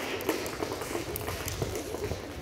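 A group of children clapping their hands, many scattered, uneven claps overlapping.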